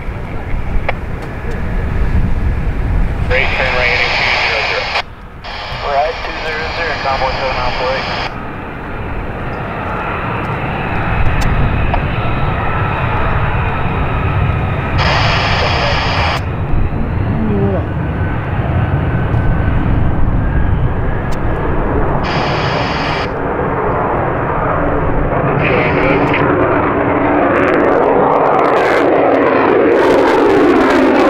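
Lockheed Martin F-35B jet engine noise building steadily louder as the jet takes off and climbs out, loudest at the end. Several short bursts of air-band radio chatter cut in and out over it.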